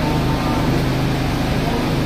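Steady low background noise with a faint hum, with no distinct events.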